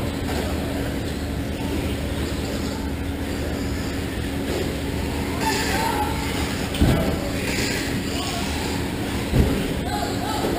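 Steady running din of 1/10-scale electric Traxxas Slash RC trucks racing on an indoor dirt track, under a constant low hum, with two dull thumps about seven and nine and a half seconds in.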